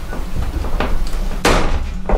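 A few knocks of a wooden batten being handled against the wooden frame and metal wall of a caravan, three in all, the loudest about one and a half seconds in.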